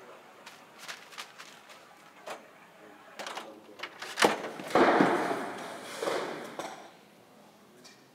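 Wooden parts of a chain-reaction machine knocking and clattering as it is handled, with a sharp knock about four seconds in followed by a couple of seconds of loud rustling rush that fades away.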